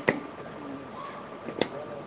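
A dove's soft, low cooing, with two sharp knocks about a second and a half apart.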